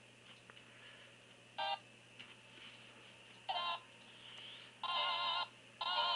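Stuttering snatches of a Flash video's soundtrack from the SmartQ V7 tablet's small speaker, played by Gnash. It cuts in and out in four short bursts, the last two longer, a sign that playback is choking with the CPU at 100%. A low steady hum runs underneath.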